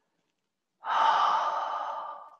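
A person's long, audible out-breath, a sigh, starting about a second in and slowly fading away.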